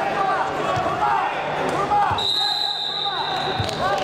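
Wrestling shoes squeaking repeatedly on the mat as the wrestlers push and step, with a few low thuds of feet, over background voices in a large hall. Just past halfway a steady high tone sounds for about a second and a half.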